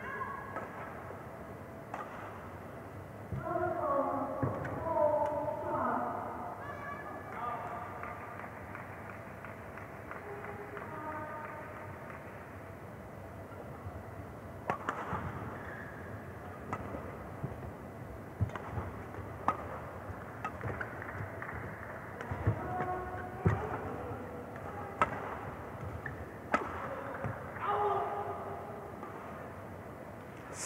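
Badminton rally: sharp racket strikes on a shuttlecock about every one to two seconds through the second half, in a reverberant hall. Brief voices call out a few seconds in and again near the end.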